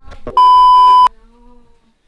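A single loud electronic beep: a steady high tone that starts about a third of a second in and cuts off suddenly under a second later.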